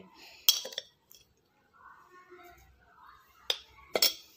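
A metal spoon clinking against the blender jar and dishes while powdered sugar is spooned in: one sharp clink about half a second in and two more near the end, with faint soft sounds between.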